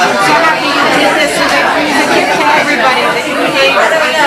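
A woman speaking over the chatter of a crowded room.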